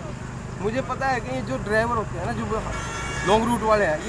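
A passing road vehicle rumbles and sounds its horn briefly, a steady tone lasting under a second about two and a half seconds in, under men talking.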